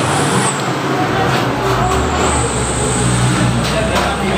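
Steady low rumble of a road vehicle's engine with traffic noise, the rumble growing louder about two seconds in.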